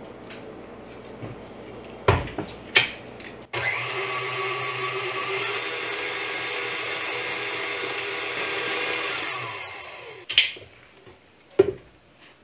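Stand mixer with its wire whisk attachment whipping buttercream in a metal bowl: a low hum at first, then a louder steady motor whir from a few seconds in that winds down about ten seconds in. A couple of sharp knocks come before the whir starts and after it stops.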